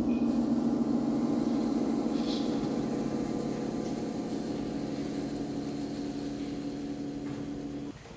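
Percussion instruments ringing on as one held chord after a loud hit, fading slowly, then damped off suddenly near the end.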